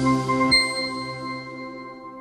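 Closing notes of an intro music jingle: sustained ringing tones with a struck chime about half a second in, fading out gradually.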